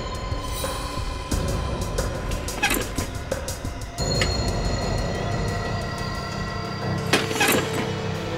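Tense dramatic background music with held tones, marked by two sudden accents, about a third of the way in and near the end.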